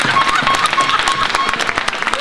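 Audience applause: many hands clapping in a large, echoing hall. Over the clapping, a short note repeats several times at one pitch, then stops about a second and a half in.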